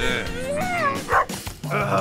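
A dog's gliding whines, then a short bark about a second in, over background music.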